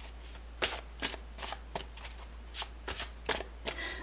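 A deck of tarot cards being shuffled by hand: a run of short, sharp card snaps, about two a second and unevenly spaced.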